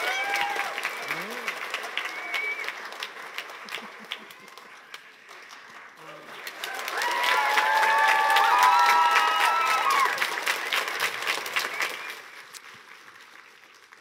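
Audience applauding. The clapping thins out about five seconds in, then swells again for a few seconds with voices calling out and whooping over it, and dies away near the end.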